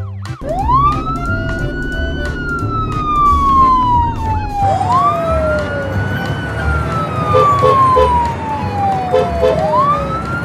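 Ambulance siren wailing: each cycle rises quickly in pitch and then falls slowly. Three cycles start about four and a half seconds apart, over a low background rumble.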